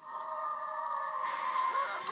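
Film trailer music playing through laptop speakers: a held chord of several steady tones that starts suddenly. About a second in it swells, with a rising hiss and sliding notes.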